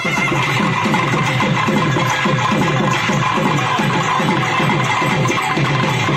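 Naiyandi melam folk band playing live: a thavil drum beats a fast, dense rhythm under a nadaswaram melody.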